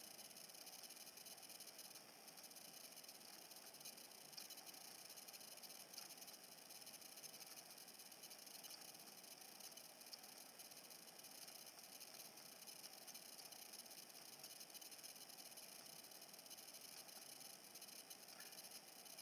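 Near silence: a faint steady hiss of room tone, with a few very faint ticks.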